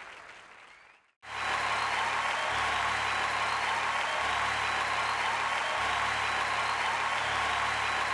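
Audience applause fading away, a brief silence about a second in, then a loud, steady wash of crowd applause with a low hum beneath it.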